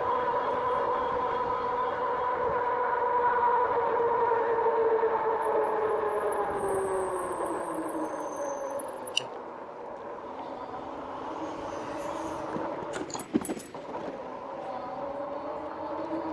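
2018 Rad Power RadRover electric fat-tire bike riding along pavement: a steady whine from its hub motor and tyres that sinks in pitch from about six seconds in as the bike slows, and gets quieter. A few sharp clicks near the end.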